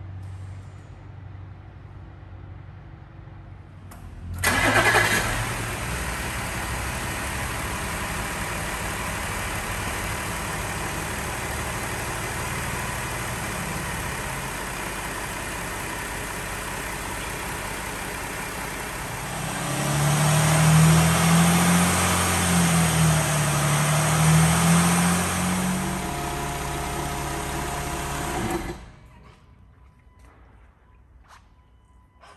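A car engine starts about four seconds in and then runs steadily while cleaner circulates through the automatic transmission. About two-thirds of the way through it grows louder, with a wavering hum as the engine is run up through the gears with the drive wheels free on the lift. It then settles and cuts off suddenly near the end.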